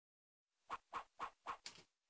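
Faint intro-card sound effects: a run of five short, quick hits about four a second, the last one a little longer.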